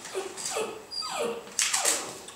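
Small terrier whining in short falling whimpers, about four of them, begging at the feet of people eating. A brief loud noisy rush near the end.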